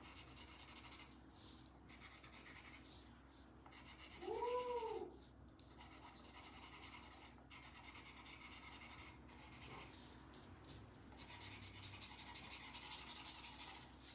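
Chalk pastel rubbed quickly back and forth on drawing paper, a faint, dry scratching of rapid short strokes as the trees are coloured in. About four seconds in, a single short call that rises and falls in pitch sounds over it.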